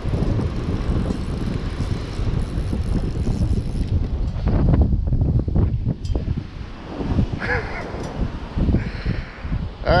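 Wind buffeting the microphone, a steady low rumble, with a few knocks about halfway through.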